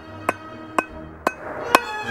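Hand hammer striking red-hot 3/8-inch round steel stock on an anvil, four even blows about two a second, over background music.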